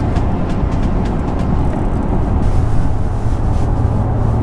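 Road noise inside a moving car's cabin: a steady low rumble of tyres and engine at highway speed, with a low steady hum joining about halfway through.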